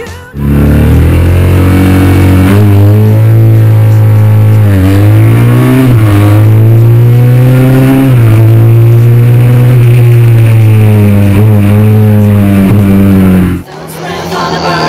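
Triumph parallel-twin motorcycle engine at full throttle, heard from on board on a sprint run. It is loud, its pitch climbing slowly in each gear and dipping at several gear changes. It cuts in abruptly just after the start and cuts off shortly before the end.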